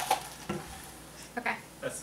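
Plastic iced-coffee cups with ice being handled and set down on a wooden table: a sharp knock at the start, then a few lighter clicks and ice rattles.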